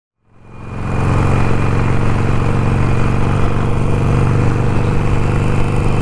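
Motorcycle engine running steadily while riding at cruising speed, with a steady rush of wind noise. The sound fades in over the first second.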